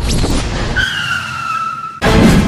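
A Suzuki Swift drives in and brakes hard. The rush of the moving car is heard first, then from under a second in a long tyre squeal that slowly falls in pitch as it pulls up.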